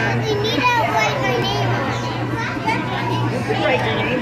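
Children's voices chattering and calling out, over a steady low hum.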